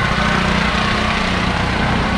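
A small motorbike engine running steadily.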